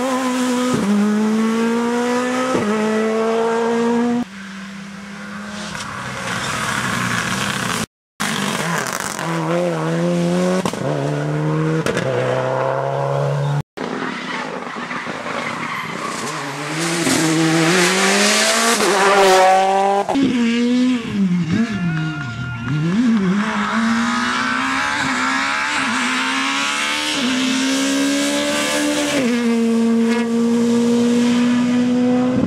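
Rally cars at full throttle on a stage, heard in several short clips. The engine note climbs and then drops sharply at each upshift, several times in a row. About two-thirds of the way through, the note falls and rises again as a car slows for a bend and picks up speed.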